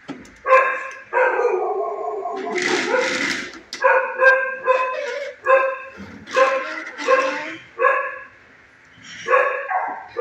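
A dog barking repeatedly, about ten barks at an uneven pace. About a second in, one longer bark drops in pitch, and a harsh noisy burst follows around three seconds in.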